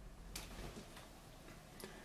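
Two faint clicks, the first under half a second in and a fainter one near the end, from handling tools and the figure's base at a sculpting bench, over quiet room tone.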